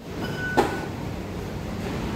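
Station fare-gate card reader giving a short electronic beep as a card is tapped, followed by a sharp click from the gate, over a steady background rumble.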